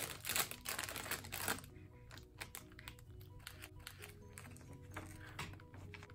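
Plastic snack bag crinkling as it is pulled open, for about the first second and a half. Then soft background music with scattered small clicks and rustles.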